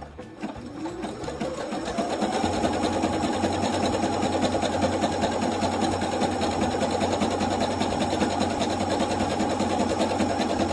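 Computerized sewing machine stitching a wide, close zigzag along a quilt's raw edge. It picks up speed over the first two seconds or so, then runs steadily with rapid, even needle strokes.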